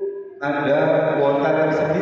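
A man's voice through a microphone and PA loudspeakers in a reverberant hall, with long drawn-out sounds after a short break about half a second in.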